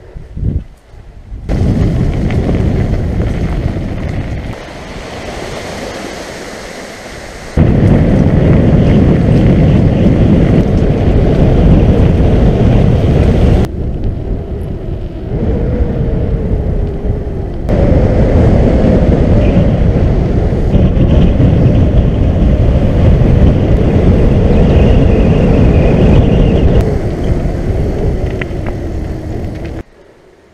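Wind buffeting and rushing over an action camera's microphone while riding a mountain bike, with the rolling noise of the bike; the noise stops and starts abruptly several times at cuts between clips.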